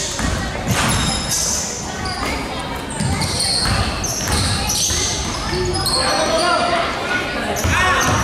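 Pickup basketball on a hardwood gym floor: the ball bouncing as it is dribbled, with sneakers squeaking and players' voices, all echoing in the gym.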